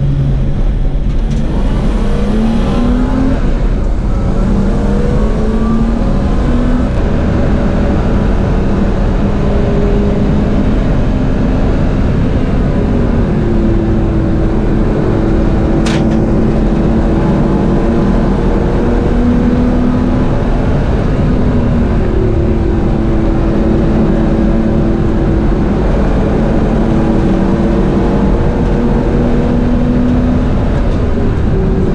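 BMW E30's naturally aspirated M30 straight-six heard from inside the cabin under full load on track. The engine note climbs slowly through the revs and drops suddenly at each upshift, several times, with one sharp click about halfway through.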